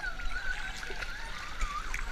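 Pool water sloshing and lapping at the surface right at the microphone, with a faint wavering high tone running through it.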